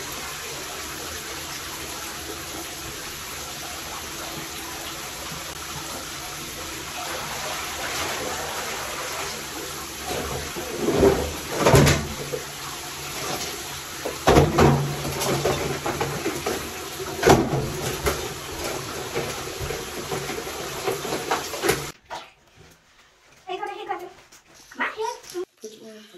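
Bathtub faucet running steadily, water pouring into the tub, with a few louder sudden noises in the middle. The running water cuts off suddenly near the end.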